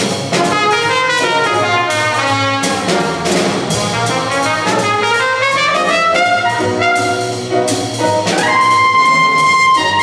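Trumpet playing a jazz solo of quick rising and falling runs, then holding a long note near the end, over a small jazz rhythm section with bass and drums.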